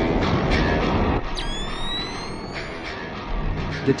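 Soundtrack of a Doom-style animation: music under a dense, rumbling effects mix that drops away about a second in, followed by a rising electronic tone.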